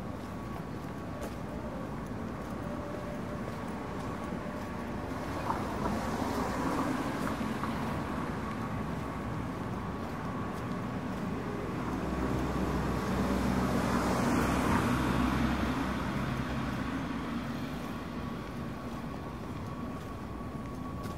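City street traffic: a vehicle passes about six seconds in, then a heavier one with a low engine rumble swells and fades between about twelve and sixteen seconds, over a steady street hum.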